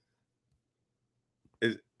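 Near silence, broken near the end by one short spoken syllable.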